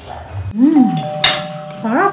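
A woman humming a drawn-out "mmm" with her mouth full while eating sausage. The pitch rises and falls, holds steady, then rises again near the end. A single sharp click comes about a second in.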